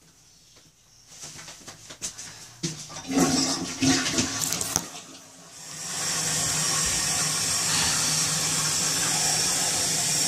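Toilet flushing about six seconds in, the water then running in a steady hiss as the bowl and tank refill, after a few seconds of scattered knocks and clatter.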